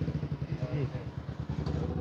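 An engine running steadily at an even low pitch, with a faint voice over it.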